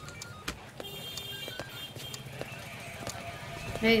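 Quiet film background music of held tones that step in pitch, with a few light knocks scattered through it. A woman's voice calls "Hey" near the end.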